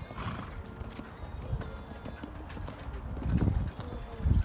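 Horses cantering on a sand arena: muffled hoofbeats in an uneven rhythm, loudest about three seconds in as a horse passes close by.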